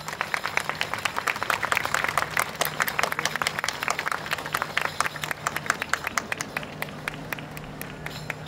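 Audience applauding as a tune ends: dense clapping for the first several seconds, thinning out toward the end.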